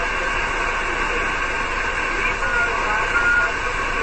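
Steady hiss from a six-metre single-sideband receiver, with a weak voice barely showing through it: the tropospheric signal has faded down into the noise (QSB).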